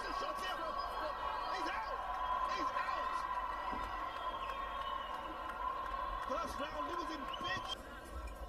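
Indistinct talking, too faint to make out, over a steady high hum that cuts out near the end.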